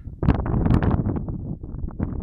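Wind buffeting a phone's microphone: a loud, uneven rush of noise, heaviest at the low end, that comes in about a quarter second in and gusts up and down.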